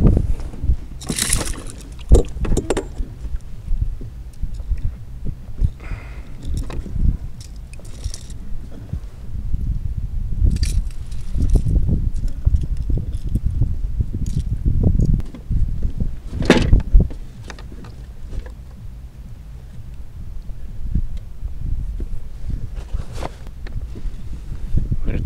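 Scattered metallic clicks, knocks and rustles as a bass is unhooked from a crankbait with metal pliers and handled on a plastic kayak, over a steady low rumble. The sharpest knock comes about two-thirds of the way through.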